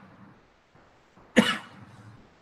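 A person coughs once, a single sharp cough about one and a half seconds in.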